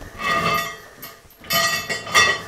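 Metallic squeaking and clinking from a homemade steel-cable pulley attachment as a 45-pound plate on a chain is pulled up and let down in tricep push-downs, coming in two bursts.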